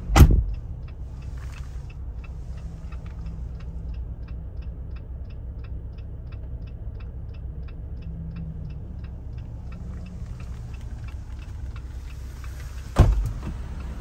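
A car door shuts with a thump, then the Jeep idles with a low hum while its indicator ticks steadily, about two ticks a second. Near the end there is a second door thump.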